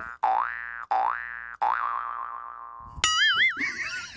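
Cartoon 'boing' sound effect played three times in quick succession, each one springing up in pitch and ringing out, the last fading longest. About three seconds in, a wobbling, warbling whistle-like comedy effect cuts in.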